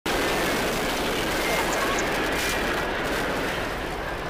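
Steady, loud roar of SpaceX Starship's Super Heavy booster lifting off on its 33 Raptor engines.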